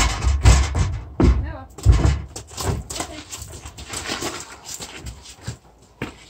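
A mule's hooves thudding on a horse trailer's loading ramp as it walks up into the trailer: several heavy thuds in the first two seconds, then lighter, irregular knocks that fade.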